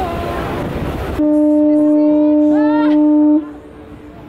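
Wind and water spray on the microphone, then, about a second in, a boat's horn sounds one loud, steady blast of about two seconds that cuts off sharply.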